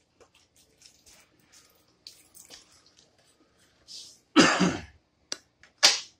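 Faint rustles and small knocks of someone settling onto a couch while handling a cigar box guitar on a strap, then two loud, short rushes of noise, one about four and a half seconds in and one near the end.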